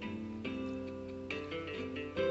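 Enka backing music playing an instrumental break between sung verses: held chords, with new notes struck about half a second in and again just past a second in.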